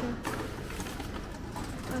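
Low, steady rumble with faint handling noise from a reverse vending machine for cans and bottles, which has just taken a can.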